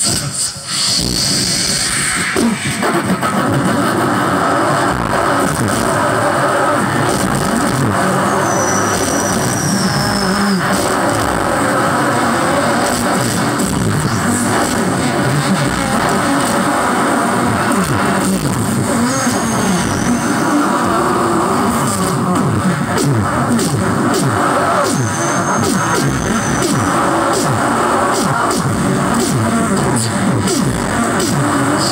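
Several men making vocal sound effects into hand-held microphones together, a dense, continuous music-like mix of mouth-made beats and noises through the stage loudspeakers, with a high whistle three times.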